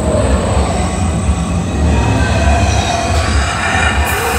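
Steady loud rumble of the robotic-arm ride vehicle travelling along its track through a dark section of the ride: a deep low drone with an even hiss over it, and no pauses or strikes.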